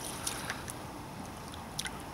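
Shallow lake water sloshing, with a few small splashes, as a carp is held in the margin to recover before release. Low wind noise is also present.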